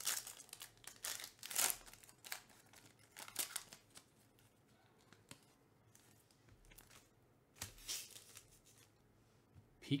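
A foil trading-card pack wrapper being torn open and peeled back by hand, in several short, irregular rips and crinkles. The loudest come in the first two seconds.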